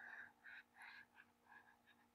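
Very faint scratching of a pen stylus on a tablet, a few short strokes drawn in quick succession.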